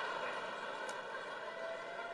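Live theatre audience laughing, the laughter slowly dying away.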